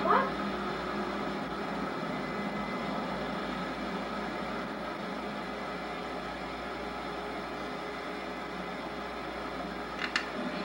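Steady hiss with a low hum, the background noise of an old video's soundtrack played through a TV, with no distinct sound events; a brief voice fragment right at the start.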